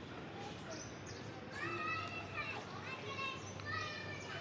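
Distant children's voices calling out over outdoor neighbourhood ambience, with a few short high calls in the second half.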